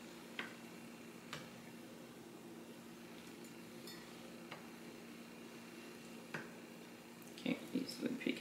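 Faint room tone with a steady low hum, broken by a few light clicks of a knife and fork against a plate and a short cluster of taps near the end.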